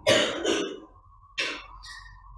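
A man clearing his throat with a short cough, then a brief click about one and a half seconds in, over a faint steady tone.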